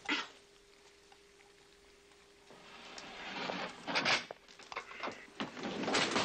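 A kitchen oven being opened and a baking dish lifted out, with a knock at the start, then a quiet stretch with a faint steady hum, and then clattering and knocks as the dish is handled.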